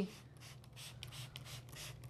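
Faint, quick hissing squirts from a trigger spray bottle misting water, many in quick succession, over a low steady hum.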